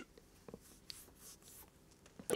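Near silence: room tone with a few faint small clicks.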